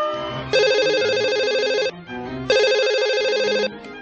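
Mobile phone ringing twice, each electronic ring a warbling tone lasting just over a second with a short gap between, over background music.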